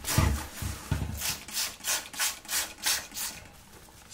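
Hand-pumped trigger spray bottle squirting liquid onto a paper towel: a quick run of short hissing sprays, about two a second, that stops a little after three seconds in.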